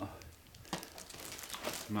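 Cellophane wrapping on a gift box crinkling and crackling as fingers pick at it, with a sharper crackle about three-quarters of a second in.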